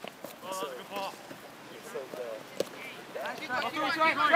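Scattered voices calling out across a soccer field, growing louder and busier near the end, with one sharp knock about two and a half seconds in.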